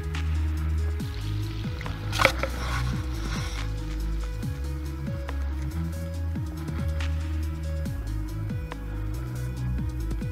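Background electronic music with a deep bass line and repeated falling bass slides. About two seconds in, a brief loud noisy burst cuts across it.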